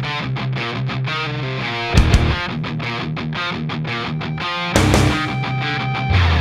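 Post-hardcore rock song: a fast, rhythmically picked distorted electric-guitar riff, broken by heavy full-band accents with bass and cymbal about two seconds in and again near the end.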